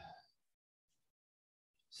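Near silence, the tail of a spoken word fading out at the very start.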